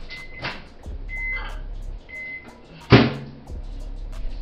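Three short, high electronic beeps about a second apart, like an appliance's beeper, then one loud knock about three seconds in, over faint background music.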